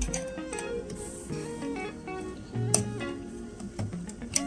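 Background music: a light melody of plucked-string notes, like an acoustic guitar.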